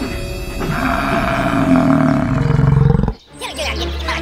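A loud animal roar sound effect over background music, growing louder and cutting off abruptly about three seconds in.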